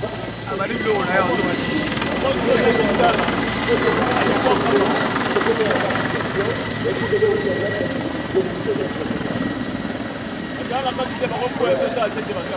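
Mi-24 attack helicopter flying low past, its rotor and turbines giving a steady, continuous sound, mixed with a crowd's voices.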